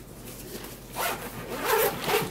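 Zipper on the lid of a fabric grocery tote bag being pulled open in two strokes: a short one about a second in, then a longer, louder one near the end.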